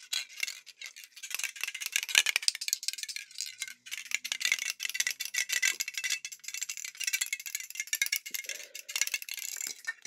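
Small aerosol spray can shaken and handled close to the microphone: a dense run of quick metallic rattling clicks over a hiss, starting about a second in and stopping near the end.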